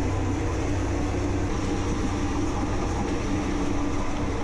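Passenger train running at speed, heard at an open carriage window: a loud, steady rumble of the train on the track with rushing air. It cuts off suddenly just after the end.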